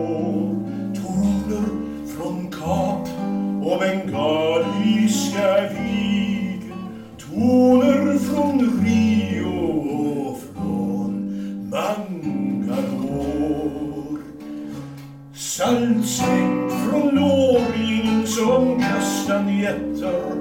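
A man singing a Swedish troubadour song, accompanying himself on a classical guitar, phrase after phrase with short breaths between.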